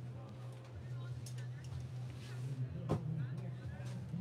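A single sharp knock about three seconds in as a fold-down bunk panel in a Winnebago Hike travel trailer is lowered and let go. Under it runs a steady low hum, with faint voices in the background.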